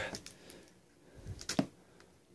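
Quiet handling noise as a folding pocket knife is put to a taped cardboard box: a few soft clicks and scrapes, with one sharper tick about one and a half seconds in.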